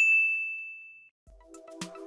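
A single bright ding, a notification-bell sound effect, ringing out and fading over about a second. Rhythmic outro music with a beat fades in about a second and a half in.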